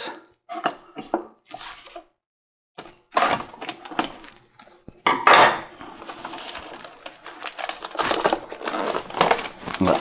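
Hands handling a cardboard retail box and unwrapping its plastic shrink wrap: scattered rustles and taps, a short gap, then from about five seconds in a continuous run of crinkling and small clicks.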